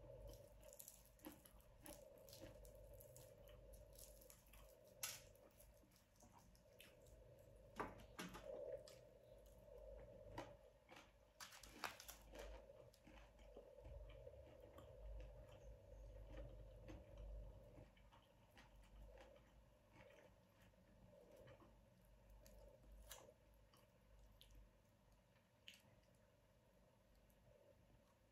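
Faint close-up chewing and mouth sounds of someone eating fried chicken and sticky rice by hand, with scattered sharp crackles and clicks over a faint steady hum.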